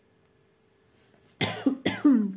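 A woman coughing: a short run of hard coughs starting about one and a half seconds in.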